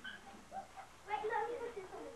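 A small child's high-pitched whine: brief voice sounds, then one drawn-out wavering cry from about a second in.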